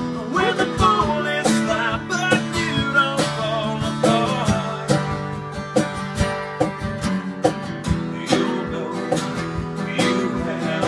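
Acoustic guitar strummed in a steady rhythm, with a man singing over it for the first few seconds.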